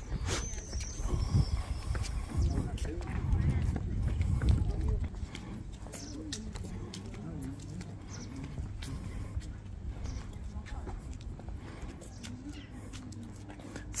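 Wind buffeting the microphone as a low rumble for about the first five seconds, then faint voices of people talking nearby, with a few scattered clicks.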